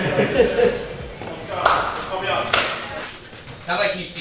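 Indistinct men's voices with a few sharp knocks in the middle.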